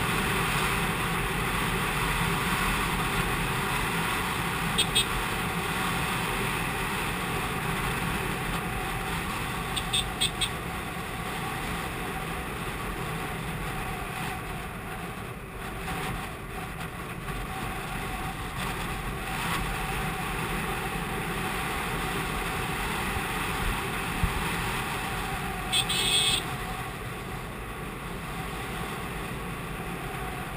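TVS Apache RTR 180's single-cylinder four-stroke engine running steadily at cruising speed, mixed with wind rushing over the camera microphone. A few short high-pitched beeps cut through, about five, ten and twenty-six seconds in.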